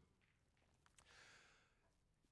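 Near silence, with a faint breath drawn about a second in.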